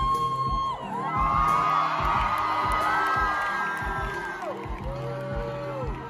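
Indie rock band playing live, with sustained low notes over a steady drum beat, while the audience whoops and screams over the music.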